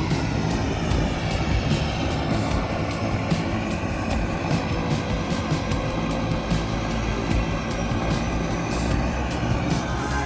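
A boat's engine running steadily, a continuous low rumble mixed with wind, under background music.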